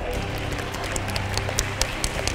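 A small group of people clapping their hands, scattered and uneven claps rather than full applause.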